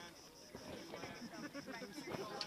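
Faint voices of several people talking in the background, with a rapid, even high-pitched pulsing running underneath.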